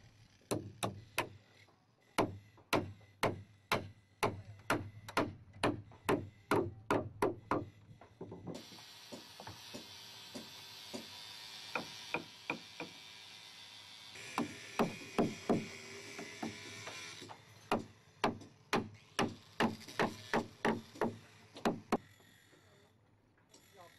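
Hand hammer striking the wooden timbers of a hull under construction, a steady run of blows at about two a second. Partway through the blows give way to several seconds of steady hiss with a few lighter taps, then the hammering starts again.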